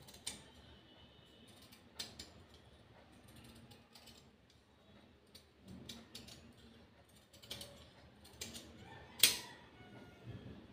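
Steel tailor's scissors snipping through folded cotton fabric: irregular short clicks of the blades, with the sharpest and loudest snip near the end.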